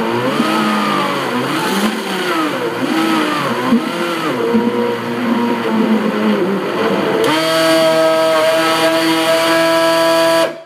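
A blender running on frozen bananas to make banana ice cream, worked with a tamper. Its motor pitch sags and recovers over and over as the frozen fruit is pushed down into the blades. About seven seconds in it jumps to a steady, higher pitch.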